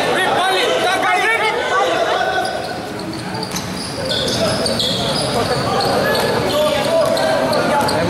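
Basketball game sounds in a large covered court: a ball bouncing on the concrete floor, with players and spectators calling out and talking.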